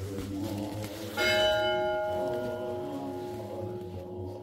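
A church bell struck once about a second in, its ringing fading slowly over faint chanting.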